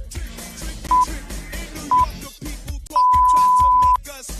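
Workout interval timer beeping at one steady pitch: two short beeps a second apart, then a long beep of about a second, the countdown that ends a 20-second work interval. Background music plays underneath.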